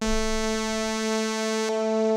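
Bitwig Polysynth sounding a held, steady synthesizer note, its filter driven step by step by the ParSeq-8 parameter sequencer. About three quarters of the way through, the sound turns duller as the filter moves to its next step.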